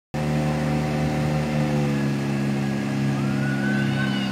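Engine of a motorised river longboat running at a steady speed and pitch, with water rushing along the hull. A faint rising tone comes in near the end.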